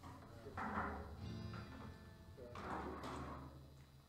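Guitar being played briefly while the band tunes up before a song: two short strums with a few ringing notes between them, fairly quiet.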